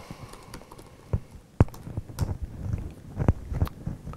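A few irregular keystrokes on a laptop keyboard, with one sharper click about one and a half seconds in.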